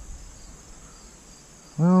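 Steady high-pitched insect chorus carrying on through a pause in talk, with a man saying "well" near the end.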